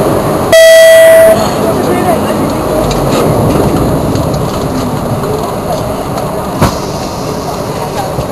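A single loud, steady electronic beep lasting just under a second, over the steady background noise of a parked Dash 8-300's cabin with people murmuring. A single sharp knock comes later.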